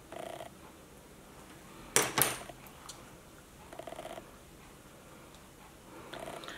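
Two sharp clicks in quick succession about two seconds in, between fainter short scuffing sounds.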